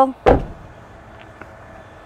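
A single heavy thump about a third of a second in: the rear door of a Chevrolet Silverado pickup being shut.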